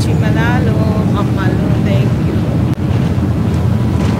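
Passenger ferry's engines running with a steady, loud low rumble, heard from an open deck with wind on the microphone. Voices are faintly heard over it.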